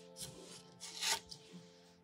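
Faint handling noise: a few short rustles and rubs, about a quarter second in and again around one second in, as a hand reaches across the paper and picks up a card of watercolour colour sheets.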